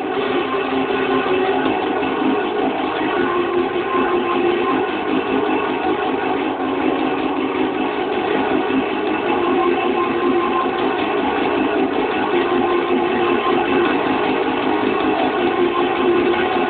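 Guitar music playing, with a steady engine-like hum running under it.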